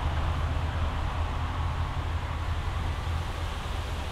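Steady low rumbling noise with a hiss over it, which cuts off suddenly at the end.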